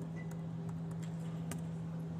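A few faint clicks and taps of hands on a laptop over a steady low hum.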